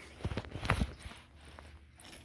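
A few light taps and knocks in the first second as a small die-cast toy car is pushed and handled by hand on a carpet.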